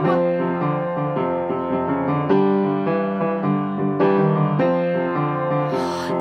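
Piano playing a short instrumental passage of chords and melody notes, without singing.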